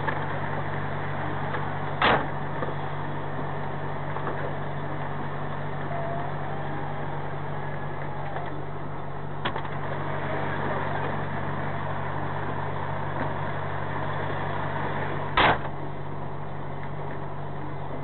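Truck cab interior with the lorry's diesel engine idling, a steady low hum. There are two sharp knocks, about two seconds in and near the end, and a fainter one midway.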